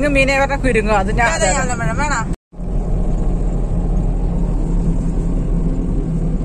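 A high-pitched voice for about the first two seconds, then a short dropout. After it comes steady engine and road noise heard from inside a moving car's cabin, with a low hum.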